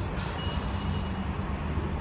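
A steady low mechanical hum, with a faint thin high-pitched tone for under a second near the start.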